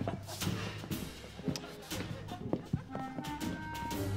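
Footsteps of several people walking across a hard floor, shoes and heels clicking, under background music with a few held notes near the end.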